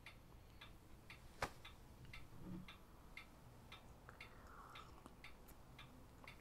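Near silence with faint, quick, uneven clicks, about three a second, and one sharper click about one and a half seconds in.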